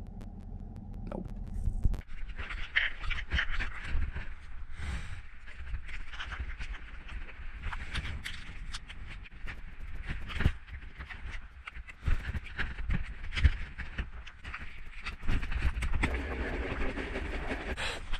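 Rustling and handling noise of a neoprene wetsuit being pulled on, with heavy breathing, a steady low rumble and scattered sharp knocks and clicks.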